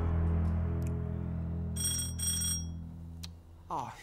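A doorbell rings twice, two short rings a moment apart about two seconds in, over a low held chord that fades out. Someone is at the door at night.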